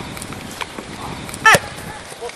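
Field noise on an open-air football pitch with a few faint knocks, and a short, loud shout from a player about one and a half seconds in, falling in pitch.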